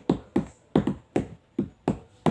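A run of sharp hand taps beaten out as a rough beat to sing to, about seven strikes in two seconds in an uneven rhythm.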